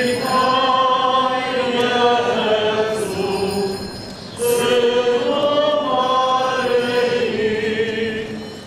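Slow church hymn sung in long held phrases, with a short break about four seconds in before the next phrase begins.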